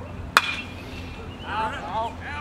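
A baseball bat hitting a pitched ball: a single sharp crack with a brief ring. Shouting voices follow about a second later.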